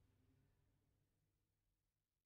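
Near silence: faint room tone, slowly fading.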